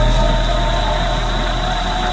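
Electronic music: a deep sub-bass note holds and slowly fades under steady, sustained synth tones and a bed of hiss.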